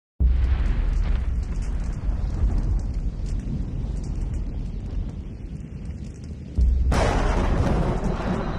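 Cinematic boom sound effect: a deep hit with a low rumbling tail that fades over about six seconds. A second deep hit comes about six and a half seconds in, and a fuller, brighter sound cuts in just after it.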